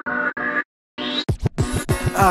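Hip-hop track intro: two short pitched chord stabs, then DJ turntable scratching from a little after a second in, with fast sweeps up and down in pitch.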